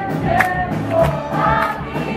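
A mixed choir of boys' and girls' voices singing in harmony, live on stage, backed by electric guitars and bass guitar, with a regular beat about every half second or so.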